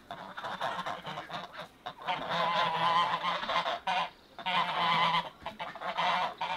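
Domestic goose honking in a long run of repeated calls, strongest from about two to four seconds in and again around five seconds, with a brief break between.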